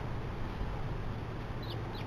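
House sparrows chirping: two short, high chirps close together near the end, over a steady low background rumble.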